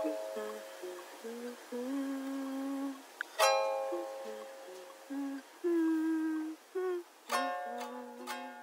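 Ukulele chords strummed about every four seconds and left to ring, with a hummed melody of short held notes between them.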